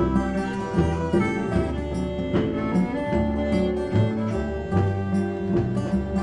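Old-time string band playing an instrumental break between verses: acoustic guitars strumming and picking, with a fiddle and steady low bass notes underneath.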